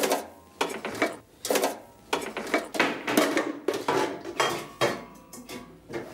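A run of short, irregular rustling and clicking noises, about two a second.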